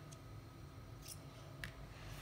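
Faint metal clicks and light scraping of a metal holder being fitted by hand onto a metal axle, with a few small clicks and the clearest one near the end.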